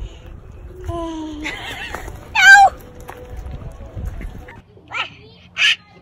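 Two short high-pitched cries: a falling one about a second in, then a louder, higher one with bending pitch about two and a half seconds in. A few brief short sounds follow near the end.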